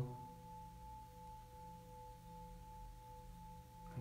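Metal singing bowls humming softly with two steady, sustained tones, a higher one and a lower one that joins about half a second in.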